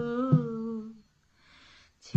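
A woman humming the last long note of a Bengali baul song, wavering slightly and sinking in pitch before fading out about a second in. A soft knock sounds under it about a third of a second in.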